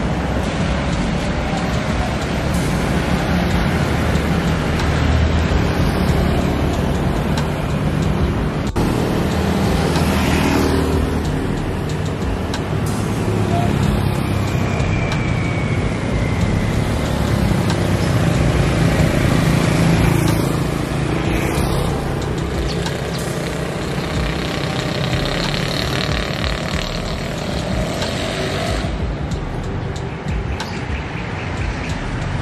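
Town road traffic: motorcycles and cars passing on a wet road, a steady wash of engine and tyre noise, with vehicles swelling past close by about ten and twenty seconds in.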